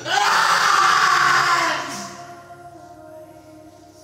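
A man screaming in pain from a stomach wound, one loud cry about two seconds long that falls in pitch.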